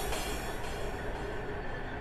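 Beatless intro of a dark drum and bass track: a harsh, noisy swell fading away over a steady low drone, with no drums yet.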